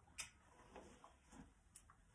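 Faint clicks and crunches of a horse chewing a treat taken from a hand, with one sharper click just after the start and another near the end.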